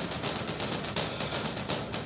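Dramatic background score with fast, evenly repeated drum strokes, a tension cue under a silent reaction shot.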